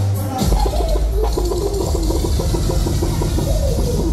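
Loud dancehall riddim over a club sound system, with heavy bass that drops out briefly at the start and comes back in about half a second in.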